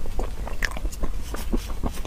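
Close-miked chewing of a mochi with coconut jelly bits in its filling: a quick, irregular run of soft, sticky mouth clicks and smacks, with the chewy bits likened to chicken cartilage.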